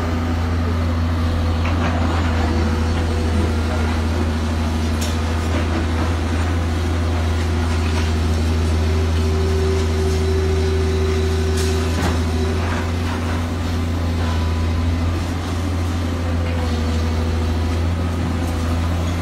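Komatsu PW180 wheeled excavator's diesel engine running steadily and loudly while it works, with a higher steady tone coming in around the middle. A few sharp knocks sound over it.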